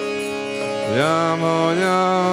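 A man singing a devotional kirtan chant over a steady harmonium drone. His voice comes in about a second in, sliding up into a held note, then steps up to a higher note near the end.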